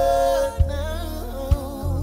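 Slow gospel song: a man's voice holds a sung note with vibrato, then carries on in wavering runs over a low bass, with a beat struck about once a second.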